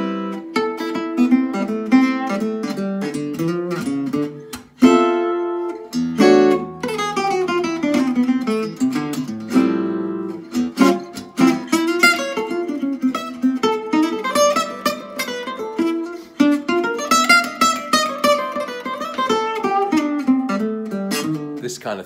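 Gypsy jazz acoustic guitar strung with Savarez Argentine strings, played in single-note solo lines with pull-offs. Quick runs of plucked notes, many falling in pitch, with a short break about five seconds in.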